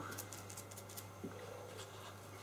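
Faint, soft dabbing of a small sponge against a silicone doll's skin, a scatter of light pats over a steady low hum.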